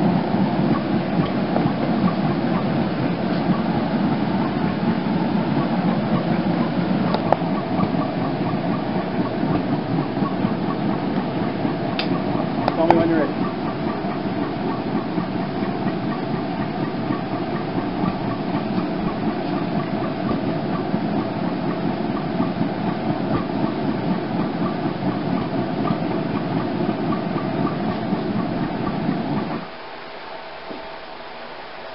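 Gas forge, turned down a little, running with a steady burner noise while a tomahawk's blade end heats to critical temperature for hardening. There is a single metallic clank about 13 seconds in, and the forge noise cuts off just before the end.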